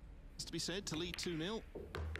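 A broadcast commentator speaks briefly. Near the end comes a single sharp click of a pool cue tip striking the cue ball.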